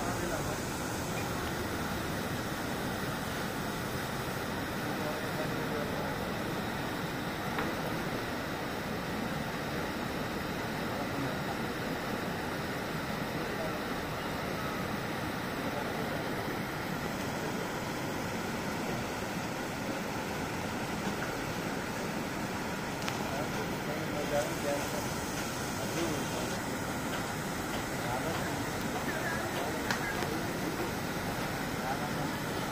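Steady rushing of a swollen, muddy river running fast over rocks and gravel bars.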